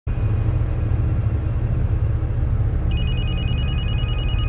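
A steady low rumble, joined about three seconds in by a telephone ringing with a fast, trilling two-note tone.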